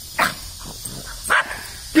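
Dogs at play, giving two short barks about a second apart.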